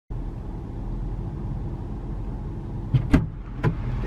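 A vehicle engine idling with a steady low hum. A sharp knock comes about three seconds in, and a lighter one half a second later.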